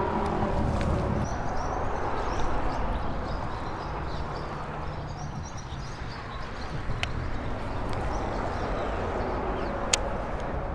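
Steady outdoor rumble and hiss with no clear single source, broken by two short sharp clicks, one about seven seconds in and one at the end.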